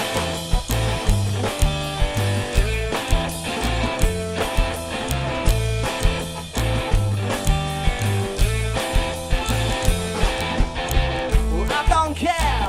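Live band playing an instrumental passage on electric guitar, upright double bass and drum kit, with a steady driving beat and a plucked walking bass line.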